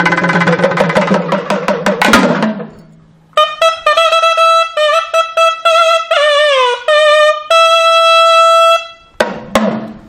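Drumming opens, a rapid flurry of strokes for about two and a half seconds; then a nadaswaram plays a melody of long held notes with bending slides between them. A brief burst of drumming returns near the end.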